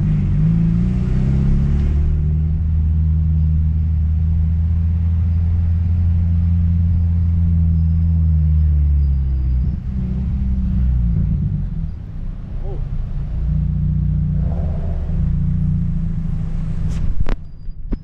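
Car engine running steadily at low revs with a low hum, the note wavering and dipping a few times after about ten seconds. Near the end there is one sharp knock as a hand handles the camera.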